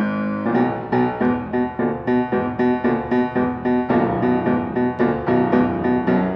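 Steinway & Sons D-274 concert grand piano being played: a fast, even stream of notes, about four to five a second, with one middle-register note recurring throughout. It starts suddenly.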